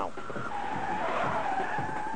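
A car's tyres squealing in a sustained screech of wheelspin, starting about a third of a second in.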